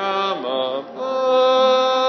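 Slow singing of long held notes, each held a second or more, with a short slide down in pitch about half a second in and a brief dip before the next long note.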